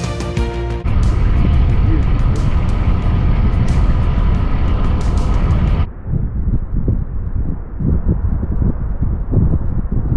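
Background music fading under the rushing wind and running noise of a motorboat under way, heard from the bow. About six seconds in the sound cuts abruptly to a duller, gusty rumble of wind buffeting the microphone.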